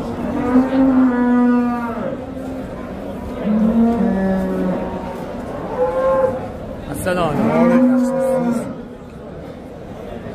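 Cattle mooing: about four long calls, one after another, the first near the start and the last, a long one, near the end.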